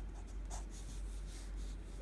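A liquid-ink rollerball pen writing on paper in faint, short scratching strokes, over a low steady hum.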